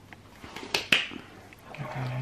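Wooden spoon stirring tagliatelle in a saucepan, with two sharp knocks of the spoon against the pot a little under a second in. A voice starts near the end.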